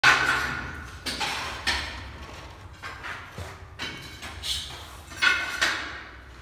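Gypsum cornice work: a series of about nine sharp knocks and scraping strokes, irregularly spaced, each trailing off briefly, from the moulded gypsum strip and plaster being pressed and worked into place against the ceiling.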